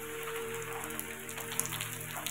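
Steady rain falling on a paved stone courtyard, an even hiss of rain with faint individual drop ticks.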